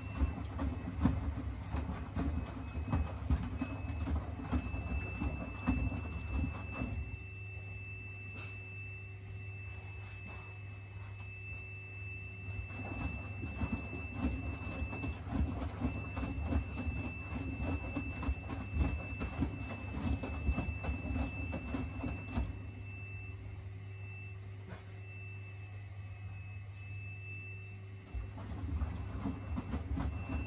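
Miele W4449 front-loading washing machine washing on its Hygiene 60°C programme: the drum tumbles the wet laundry with sloshing for several seconds at a time, stopping twice for about five seconds, then turning again. A steady high tone runs throughout.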